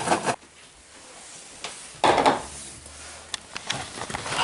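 Handling noise: a short rustling burst about two seconds in, then a few light clicks and knocks.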